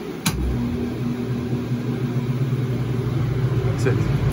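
A sharp click, then the blower fan of a Stulz commercial air-conditioning unit starts up just after it with a loud, steady low hum as the unit powers back on. The fan is running but airflow is not yet proven, and the compressor has not yet started.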